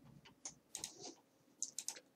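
A few faint, short clicks: one about half a second in, a couple just before one second, and a quick cluster of three or four near the end.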